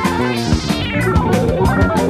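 1975 jazz-rock fusion band recording, with drums and bass under a melody line that slides down in pitch about half a second in.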